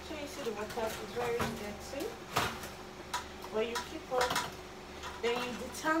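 Irregular light clicks and knocks of a hairbrush and hands against a plastic basin while a wig is washed and detangled in shampoo water.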